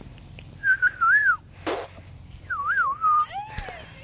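A person whistling a wavering tune in two short phrases, then a lower falling note. A brief loud rush of noise comes between the phrases.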